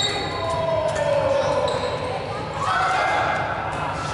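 Dodgeball play in a large hall: players' voices calling out, short high sneaker squeaks on the wooden court and balls bouncing, all echoing.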